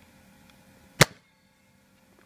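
A Nerf foam-dart pistol firing once about a second in: a single sharp pop as the dart is launched.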